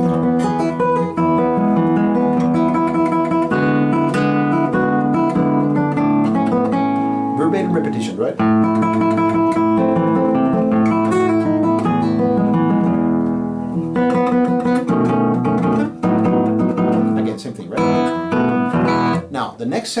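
Nylon-string classical guitar played fingerstyle: a continuous passage of plucked melody and arpeggiated chords, the return of the joropo's opening theme, with a short break about four seconds before the end.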